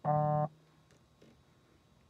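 A single short electronic beep, about half a second long, starting and stopping abruptly at a steady buzzy pitch right at the start, followed by quiet room tone.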